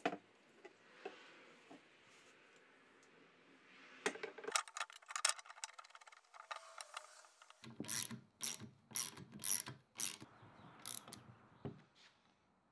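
Metal parts of a belt grinder being handled and fitted: the steel base and a thick aluminum brace clicking and knocking together. There is a cluster of clicks a few seconds in, then a run of sharp, irregular clicks and knocks through the second half.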